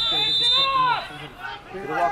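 A man's sports commentary speech, with a steady high-pitched tone lasting under a second at the start.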